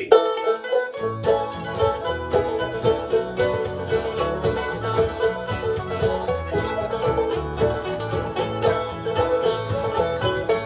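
Bluegrass band playing an instrumental opening on acoustic instruments: banjo picking rapid notes over acoustic guitar, with upright bass notes coming in about a second in.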